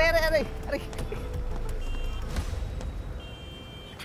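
Outdoor street ambience: a low traffic rumble that fades, with two brief high electronic beeps, the second one longer and near the end. A man's voice is heard at the very start.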